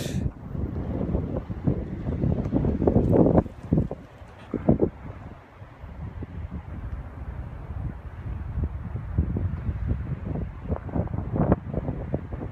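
Wind buffeting the microphone: a gusty low rumble, loudest for the first three or four seconds, easing briefly, then carrying on more evenly.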